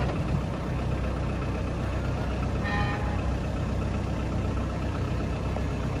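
Kubota M59 tractor loader backhoe's diesel engine running steadily at idle, with a brief higher whine about halfway through.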